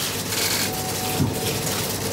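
Many press camera shutters clicking rapidly and continuously over the hiss of a crowded room.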